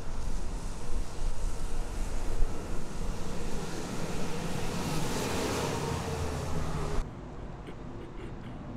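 A vehicle driving past on the road, its engine and tyre noise swelling to a peak about five seconds in, over a gusty rumble of wind on the microphone. The sound cuts off abruptly about seven seconds in.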